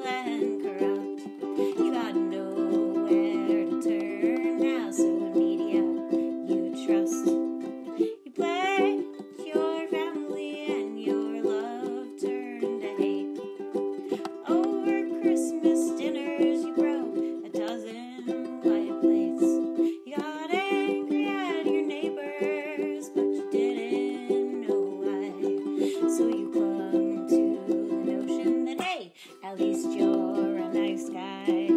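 Ukulele strummed in steady chords, with a woman's voice singing over it in places; the playing breaks off briefly about eight seconds in and again near the end.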